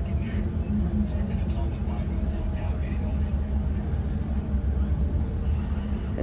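Passenger train running, heard from inside the carriage: a steady low rumble with a faint hum above it.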